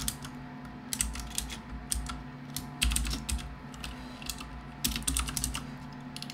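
Typing on a computer keyboard: irregular short runs of keystrokes with brief pauses between them.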